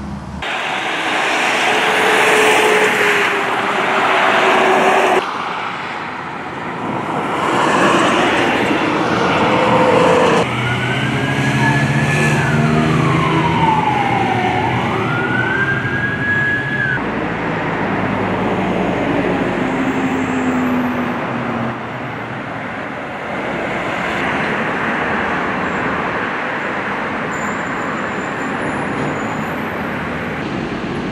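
Street ambience with traffic noise, changing abruptly from shot to shot. Partway through, a siren wails for about six seconds, falling and then rising in pitch before it cuts off.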